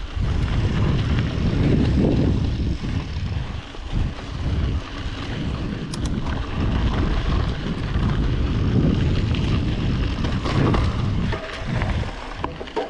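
Wind buffeting the camera's microphone in an uneven low rumble, mixed with the tyres of a Yeti SB5 mountain bike rolling over a dirt singletrack while descending, with a few brief clicks and rattles from the bike.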